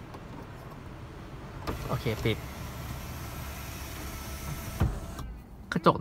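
Power sunroof motor of a Honda Accord e:HEV running for about five seconds, heard from inside the cabin, then stopping with a single thump near the end.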